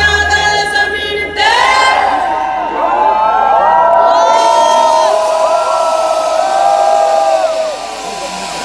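Concert crowd cheering and screaming, many voices overlapping. The music's last held note and bass stop about a second and a half in, and the crowd carries on.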